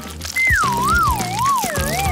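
Background music with a comic sound effect: a clean, wavering whistle-like tone that slides down in pitch in wobbles, starting about a third of a second in, joined about a second in by a second, higher wavering tone.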